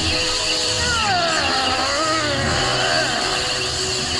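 Cartoon sound effect of magical lightning: a loud, continuous crackling electrical rush, over a dramatic music score. About a second in, a wavering pitched tone slides down and back up and fades by about three seconds in.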